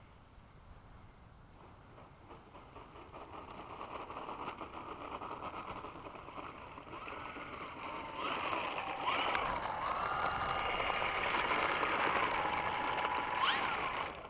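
Electric motor and propeller of a radio-controlled Gee Bee model plane, faint at first and growing louder as it comes closer. From about halfway through it whines, the pitch stepping up and down as the throttle is worked while the plane taxis across the grass.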